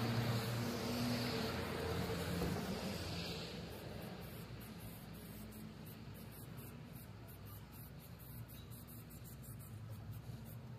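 A motor vehicle's engine running close by, fading out over the first three seconds. After that come short, closely spaced hisses of an aerosol spray-paint can as lettering is sprayed onto a brick wall.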